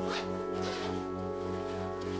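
Background music with sustained chords, and a short zip of a backpack zipper just at the start.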